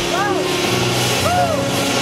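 Ground fountain firework spraying sparks with a steady, loud hiss. Short tones that rise and fall in pitch sound over it, one near the start and one past the middle.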